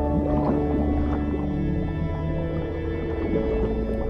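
Whale calls sliding up and down in pitch over slow background music with long held notes.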